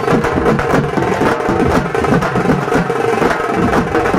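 Festival drums beaten in a fast, steady rhythm, about three to four strokes a second, with a steady held tone underneath.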